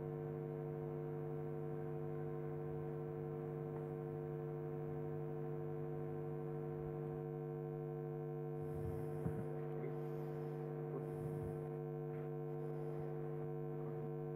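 Steady electrical mains hum in the hall's sound system while the lapel microphone is not working. A few faint bumps about nine and eleven seconds in come from the clip-on microphone being handled.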